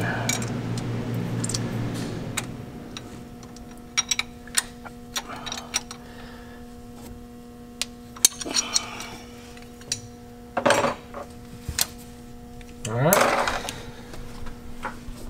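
Scattered metal clicks and clinks of hand tools working on the valve train of a Paccar MX-13 diesel during a valve adjustment, over a steady hum. A short rising whine comes near the end.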